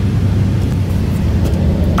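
Car engine and road noise heard from inside a moving car's cabin, a steady low drone as it drives slowly.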